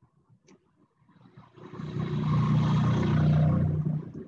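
A loud, steady engine-like rumble, as from a motor vehicle running close by. It builds up about a second and a half in, holds steady, and drops away near the end.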